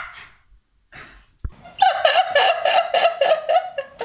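A young woman laughing hard in quick repeated bursts, about five a second, starting about two seconds in after a short quiet.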